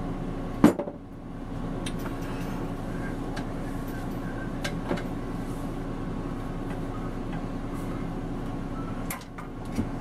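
Light clinks of hand tools and metal parts being handled, with one sharp knock about a second in and a few faint ticks after it, over a steady low hum.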